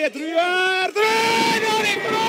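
A man's excited shout drawn out into two long held notes, the second higher and held for over a second.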